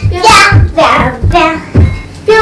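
A child's high singing voice with music, a song with a beat, to which the sisters are dancing.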